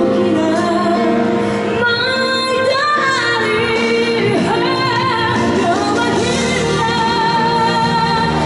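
A woman singing a pop song live into a handheld microphone, over instrumental accompaniment.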